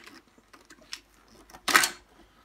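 Light plastic clicks as the handle and adjustment mechanism of a Stokke Xplory stroller are worked apart by hand, then one louder, brief noise near the end.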